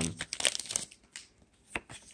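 Hands handling Pokémon trading cards and their packaging: a run of short crinkles and clicks in the first second, then a few scattered ones, the sharpest near the end.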